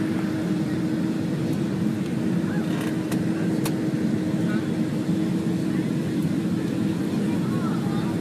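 Passenger aircraft cabin noise on the approach before landing: a steady, even drone from the engines and airflow with a constant low hum running through it.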